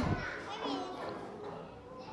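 Faint children's voices and chatter, fading to a low murmur after the first second.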